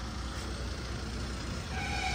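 Steady low hum of a car engine idling, with a faint brief horn-like tone near the end.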